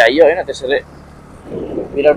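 A voice talking over the steady low hum of a motorcycle being ridden, the talk pausing about a second in so the engine and road noise show through.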